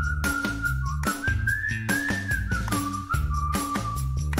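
A whistled tune sliding up and back down over upbeat background music with a steady drumbeat.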